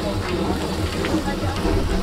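Steam traction engine running with its flywheel turning: a steady hiss of steam over a low, uneven beat, with voices over it.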